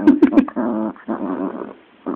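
Chihuahua growling in three drawn-out growls with short breaks between them, and a few sharp clicks near the start.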